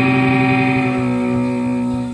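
A live rock band's closing chord ringing out on electric guitars and bass, one chord held steady and starting to fade near the end.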